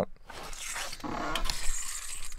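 Truck camper's entry door being unlatched and swung open: a rustling hiss with a few sharp clicks in the second half.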